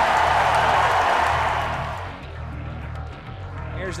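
Ballpark crowd cheering, fading away about halfway through, over background music with a steady bass line.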